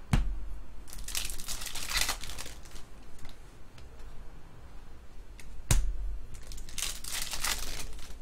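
A trading-card pack wrapper crinkling and tearing in two bursts, about a second in and again near the end. Each burst comes shortly after a sharp knock.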